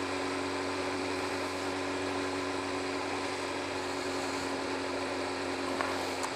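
Kawasaki ZX-7R inline-four engine running at a steady road speed. Its steady, unchanging drone and whine sit over wind and road noise.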